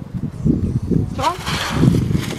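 A woman's voice talking or muttering, with a breathy hiss in the second half.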